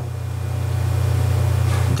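Steady low-pitched hum, with no other sound over it.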